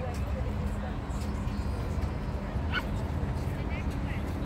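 Open-air beach ambience: a steady low rumble with faint, indistinct voices, and one short high-pitched cry about three seconds in.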